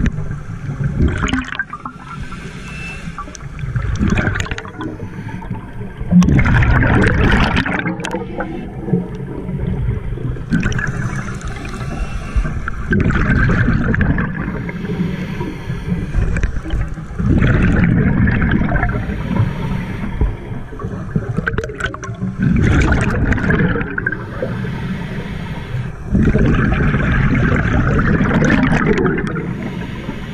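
Scuba regulator breathing heard underwater: long inhalations alternating with bubbling exhalations, in a slow rhythm that repeats every few seconds.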